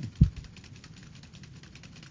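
Computer keyboard keys clicked in a rapid, even run as the same command is entered again and again. A single dull low thump just after the start is the loudest sound.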